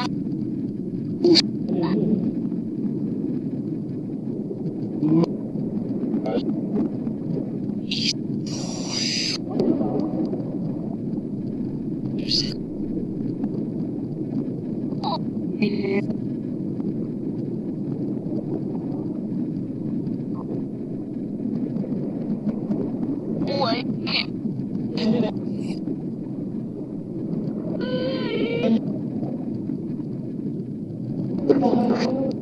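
A steady low rushing noise with short, chopped fragments of reversed, garbled speech cutting in every few seconds. A longer fragment comes about nine seconds in and another near the end. This is the output of a Necrophonic spirit-communication app playing a reversed, remixed speech sound bank.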